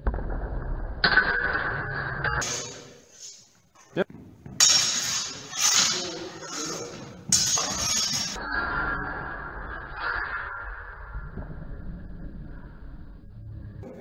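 Steel longswords clashing and scraping against each other in a sparring bout, with a sharp clink about four seconds in and louder metallic clashes soon after.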